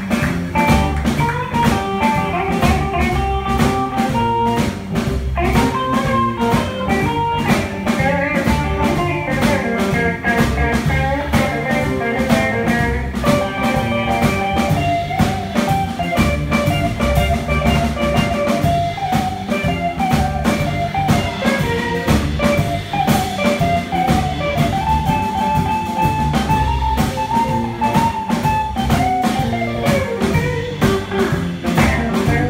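Live blues band playing an instrumental passage with no singing: a guitar lead over a steady drum-kit beat.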